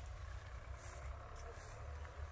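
Footsteps and rustling on a grassy field path, over a low steady rumble.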